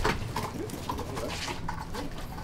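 Hand truck stacked with cardboard boxes being pushed over paving: a knock as it starts moving, then light rattling and clicking, with short low sliding tones in the first second.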